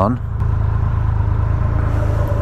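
Triumph Rocket 3 R's 2,500 cc three-cylinder engine idling steadily at low revs.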